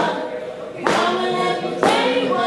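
Voices singing held notes together, with a sharp percussive hit marking the beat about once a second.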